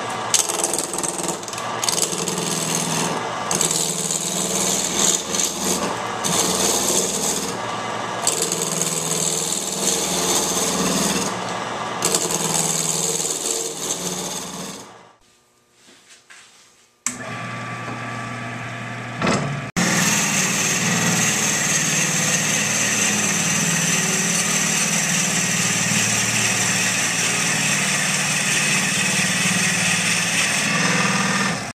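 Wood lathe spinning a walnut burl blank while a hand-held turning tool cuts it, a rough, uneven cutting noise. It stops about halfway through, and after a short pause the lathe runs again while a drill bit in the tailstock chuck bores into the end of the spinning blank, a steady even sound to the end.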